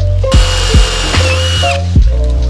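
Power drill boring into a car hood for about a second and a half. Its whine dips briefly in pitch and recovers before it stops. Background music with a steady beat plays throughout.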